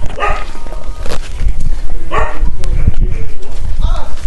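A dog barking, two short barks about two seconds apart, over a steady low rumble.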